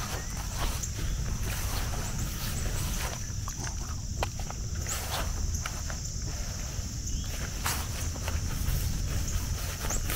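Footsteps through pasture grass, with scattered short rustles and clicks, over a steady high-pitched hiss and a low rumble.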